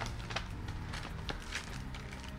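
Paper rustling and crinkling in irregular small crackles as a wrapped gift is opened by hand.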